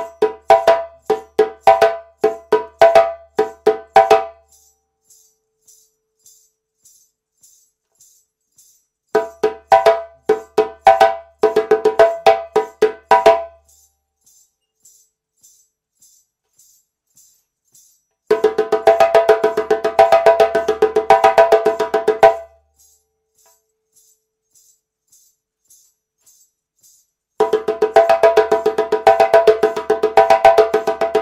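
Djembe played by hand in four short call phrases, each about four seconds long, with bass, tone and slap strokes. Between the phrases, gaps of about five seconds hold only the light, steady jingle of ankle bells ticking the beat about twice a second.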